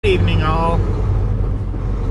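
Steady low rumble of a Volvo semi truck inside the cab, engine and road noise. A man's voice is heard briefly in the first second.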